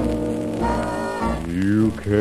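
1940s big-band dance music playing from a shellac 78 rpm record, with crackle from the record's surface. Sustained band chords give way near the end to a phrase that rises in pitch.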